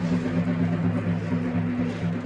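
Drum of a matachines dance troupe beaten in a fast, unbroken rhythm, heard as a deep steady drone with brief breaks, with a faint rattle over it.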